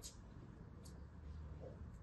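A thin blade slicing through a small clump of kinetic sand held in the fingers: a few faint, short crunching clicks, one right at the start, one just under a second in and one near the end.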